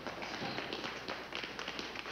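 A run of irregular light taps and clicks.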